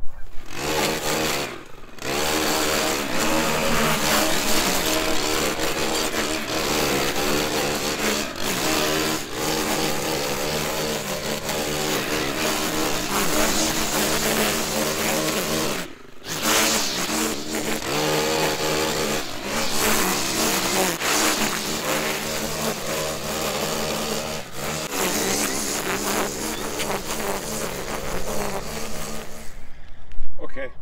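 Gas-powered string trimmer running at high revs as it cuts dry, overgrown grass, its engine pitch wavering slightly. The engine note dips briefly about two seconds in, and the sound breaks off for a moment near the middle.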